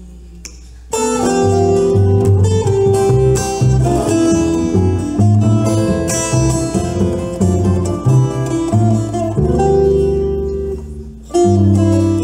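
A tiple strummed and picked over a plucked double bass, playing the instrumental opening of a bambuco; the music starts about a second in and breaks off briefly near the end before coming back in.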